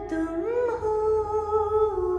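A woman humming a slow melody in long held notes, with a brief ornamental turn about half a second in.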